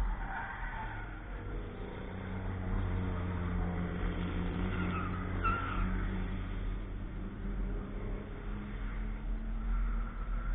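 Cars driving a road course at a distance, their engine note swelling as they work through the corners and fading near the end, with short tyre squeals near the start and again about five seconds in.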